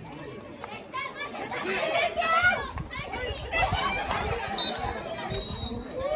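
Many voices of junior hockey players and spectators shouting and calling over one another, children's voices among them, getting louder about a second in.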